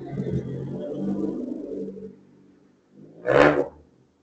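A passing car's engine rumble fades away over the first two seconds. About three seconds in, a short, loud burst of a different sound follows, lasting about half a second.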